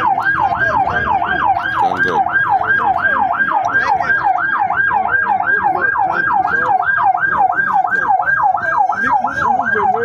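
Emergency vehicle siren in a fast yelp, its pitch sweeping up and down about three times a second without a break.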